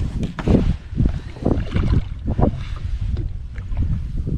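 Wind rumbling on the microphone, with splashing and a few sharp knocks as a hooked bass thrashes at the side of the boat and is lifted from the water.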